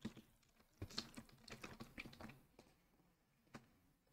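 Faint computer keyboard typing: scattered keystrokes in a few short runs, thinning out after about two seconds, with one last tap near the end.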